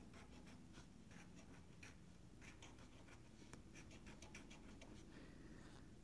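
A scratch-off lottery ticket being scratched, its coating scraped away in quick, irregular, faint strokes.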